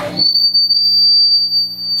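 Electric guitar pickups squealing as the guitar is held close to the amplifier's output transformer, with the amp run through a Fryette Power Station attenuator. It is one high, steady whistling tone that starts suddenly about a quarter second in, over a low hum. This is magnetic feedback from the transformer's field, not a defect in the gear.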